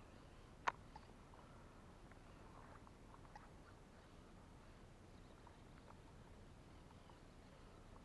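Near silence by the water: faint scattered chirps and ticks, with one sharp click under a second in and a much smaller click just after.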